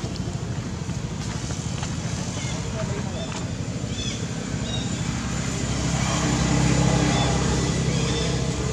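A motor vehicle's engine hum that grows louder about six seconds in, with a few short high squeaks in the first half.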